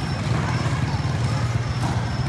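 Steady low engine rumble with a faint high whine that pulses on and off.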